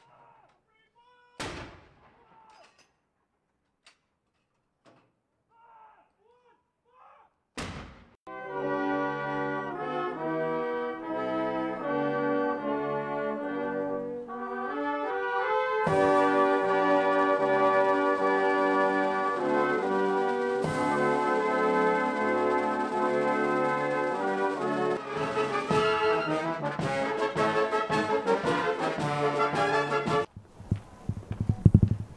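Two cannon shots of a ceremonial gun salute, about six seconds apart and kept fairly quiet because the volume was turned down. From about eight seconds in, a military brass band plays, growing louder from about sixteen seconds.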